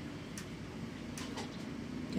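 A few faint, short ticks and scratches of a ballpoint pen on a paper notepad as a child writes a number, over quiet room noise.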